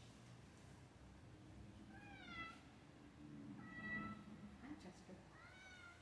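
A cat meowing faintly three times, about two, four and five and a half seconds in. Each call is short and bends in pitch.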